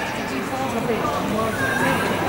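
Footballers' voices calling out across the pitch during play: drawn-out, indistinct shouts.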